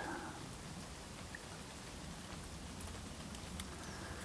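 Light rain falling on the river surface and the boat: a faint, even hiss with a few scattered drop ticks.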